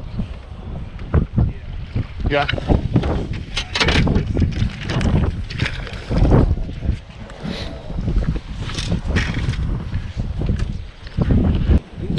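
Wind buffeting the microphone, with repeated knocks and bumps as a body-worn camera is jostled while the fish is landed and handled on a bass boat's carpeted deck.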